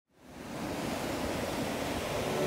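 Ocean surf breaking on a beach: a steady rush of waves that fades in from silence over the first half second.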